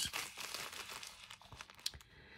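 Sewing-pattern tissue paper crinkling as a small padded, zigzag-stitched tissue journal cover is handled and flexed, with a sharp click near the end.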